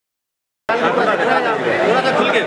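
Dead silence for the first two-thirds of a second, then men talking in a close crowd, voices overlapping.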